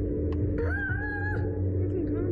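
A rider's high-pitched squeal, one held, slightly wavering cry lasting under a second, over the steady low rumble of wind and the slingshot ride.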